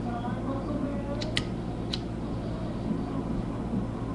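Disposable lighter's flint wheel struck three times, short sharp clicks, two close together a little past a second in and one just before two seconds, over a steady low hum.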